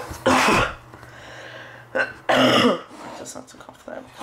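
A man coughing twice, about two seconds apart.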